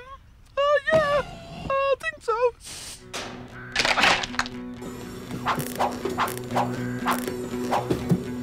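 A few short wordless vocal sounds, then wooden knocks and creaks as a front-loader bucket prises up old barn floorboards, over a steady low hum.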